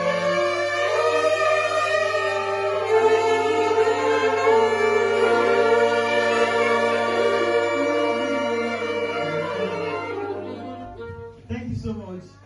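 A saxophone ensemble playing sustained chords together, the held notes moving in steps. The chord fades away near the end and a voice starts.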